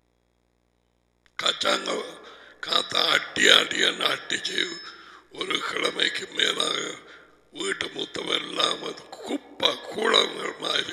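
A man talking into a headset microphone, starting about a second and a half in after a short silence, in bouts with brief pauses.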